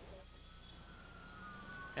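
Faint wailing siren, its pitch sliding down, over a low steady hum.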